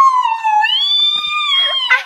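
A girl's long, high-pitched excited squeal, held for about two seconds and wavering gently down and up in pitch before breaking off near the end.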